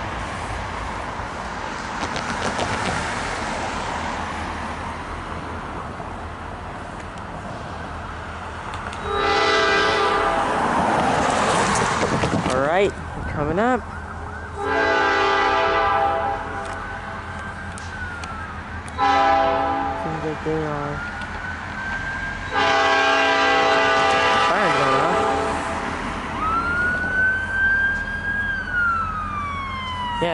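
Canadian National freight locomotive's chime horn sounding the grade-crossing signal: two long blasts, a short one and a final long one, over the low rumble of the approaching train. A wailing siren starts up near the end.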